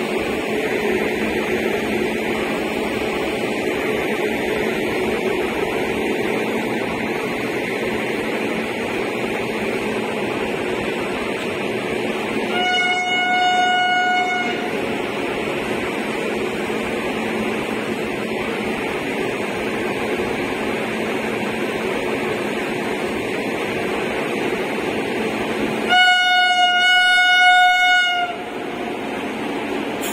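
Air horn of an approaching Indian Railways WAP-7 electric locomotive, sounding two single-pitched blasts over a steady train rumble. The first comes about halfway through and lasts under two seconds. The second, near the end, is louder and a little longer.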